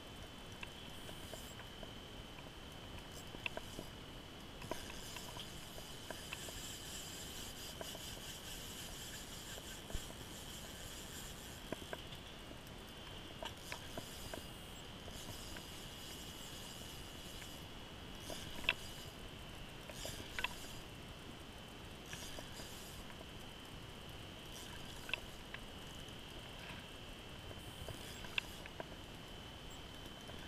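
Spinning reel and rod being worked slowly while a heavy lake trout is on the line: quiet reel winding with scattered light clicks and ticks, over a steady high-pitched whine.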